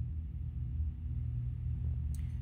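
A steady low drone, all deep rumble with no higher sounds.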